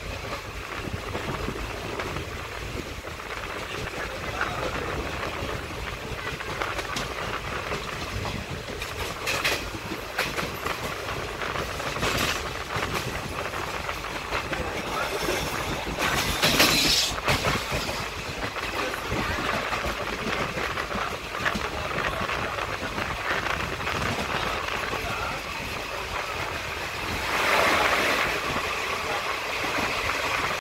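Passenger coach of a moving train, heard from an open window: a steady running rumble and rattle mixed with rushing air, swelling louder a few times, most of all around the middle and near the end.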